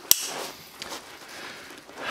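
A single sharp snap as the solar panel is slapped onto the backpack, followed by quiet rustling and a couple of faint clicks of handling.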